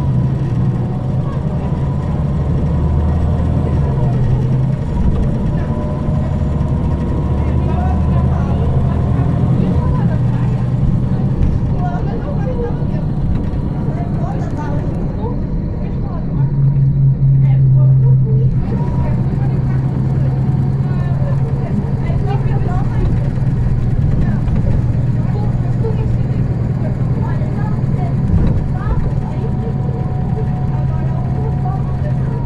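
Inside a MAN 18.310 HOCL-NL city bus with a compressed-natural-gas engine and an automatic gearbox: the engine makes a steady low drone, swelling louder for a couple of seconds just past the middle. Indistinct voices can be heard in the background.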